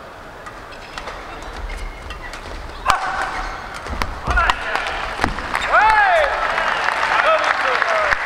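Racket strikes on a shuttlecock in a fast badminton doubles rally, a series of sharp hits with the hardest one about three seconds in. When the rally ends, just past halfway, the arena crowd breaks into loud cheering and shouting.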